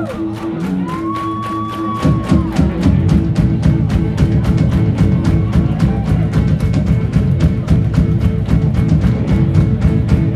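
A live rock band plays an instrumental passage on electric guitar, bass guitar and drums. About two seconds in the full band comes in louder, with a fast, steady drum beat.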